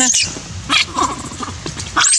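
Young macaques give a few short, scattered squeaks while scuffling with each other.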